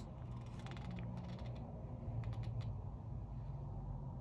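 Faint ticks and light rustling of hands on the pages of an open comic book, over a low steady room hum. The ticks come in two small clusters, the first soon after the start and the second about two seconds in.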